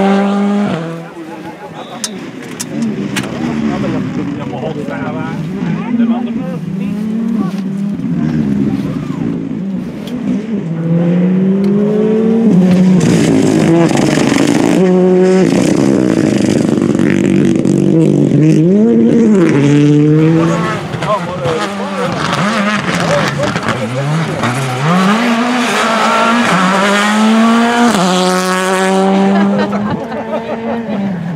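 Rally car engines at full throttle, several cars in turn. The revs climb and then drop sharply at each gear change or lift, and the pitch rises and falls as each car goes by.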